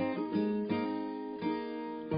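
Background music on acoustic guitar, with plucked notes that ring on, a few new notes a second.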